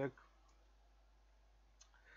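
Near silence with faint room tone, broken by a single short click near the end.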